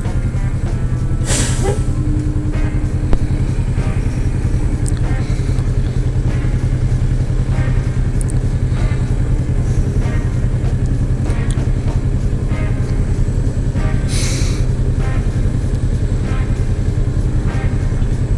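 Kawasaki Vulcan S 650's parallel-twin engine idling steadily in stopped traffic, heard from the rider's seat. Two short hisses stand out, one about a second in and one late on.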